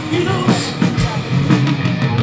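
A heavy metal band playing live, with distorted electric guitars, bass and a drum kit. The singer sings one word at the very start.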